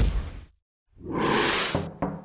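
Whoosh sound effects for an animated logo: a swish fading out about half a second in, a brief silence, then a second whoosh swelling up and dying away over about a second.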